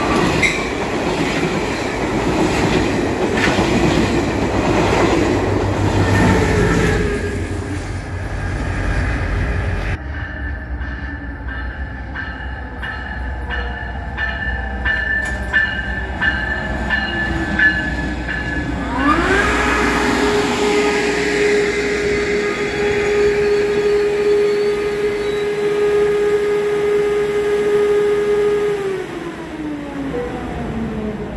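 A Caltrain train passing close by, its wheels and cars rumbling and clattering over the rails. After a quieter stretch, a locomotive air horn sounds one long blast of about ten seconds, its pitch sliding up as it starts and down as it stops.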